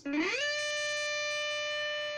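Strat-style electric guitar playing a single note that slides up about an octave over the first half second, then rings on as one steadily held note.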